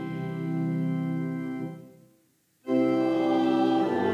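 Organ playing sustained chords of a hymn accompaniment, fading away about two seconds in, then, after a short silence, coming back in suddenly with a full chord to begin the next verse.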